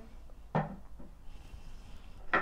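Perfume bottles being handled and set down on a hard surface: a soft knock about half a second in, then a fainter one about a second in.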